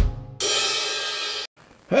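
Noise on a telephone line: a sharp click, then about a second of cymbal-like hissing noise that cuts off abruptly.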